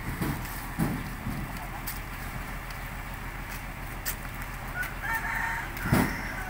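A rooster crows once near the end, over a steady low hum and a few dull thumps.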